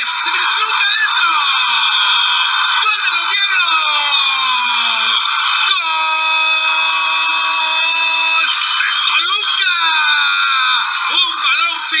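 A radio football commentator's voice, excited and drawn out, in long calls that slide down in pitch and then one long held note about halfway through, over steady background noise.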